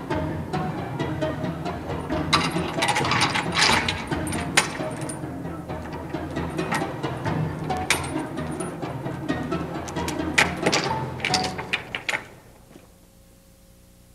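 Metal door hardware clanking and rattling in a run of sharp clicks as glass doors are locked up, over a low music bed. It all stops about twelve seconds in, leaving only a faint steady hum.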